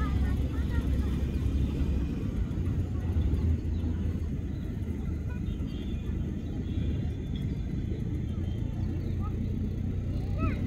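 Low, uneven rumble of outdoor wind buffeting the microphone, with a few short bird chirps near the end.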